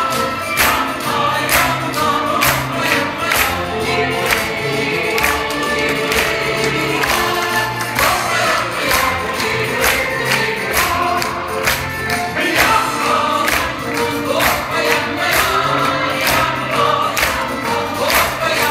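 Live stage folk music: a chorus of men and women singing over guitars, with tambourines and percussion keeping a quick steady beat.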